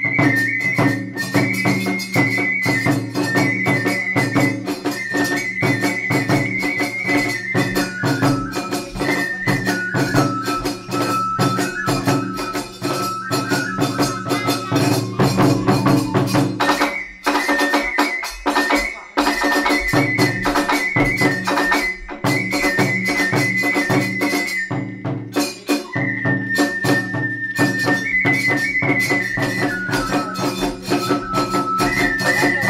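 Iwami kagura hayashi in the fast hachōchōshi style: a bamboo transverse flute plays a high held melody over rapid, clashing tesabyōshi hand cymbals and drums. The low drum drops out for a couple of seconds past the middle, then comes back.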